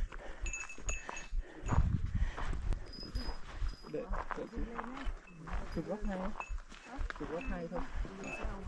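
Other hikers' voices talking close by, several people in conversation, with a brief low rumble about two seconds in.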